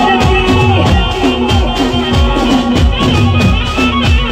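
Live Gujarati folk band playing an instrumental passage through a loud PA: a dhol beats a steady rhythm, about two strokes a second, under a repeating melodic line.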